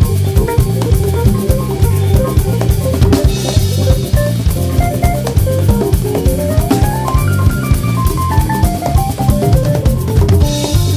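Drum kit and hand-played congas in a driving Latin groove over a band track with pitched instruments. A cymbal crash comes about three and a half seconds in, and a rising run of melody notes about six seconds in.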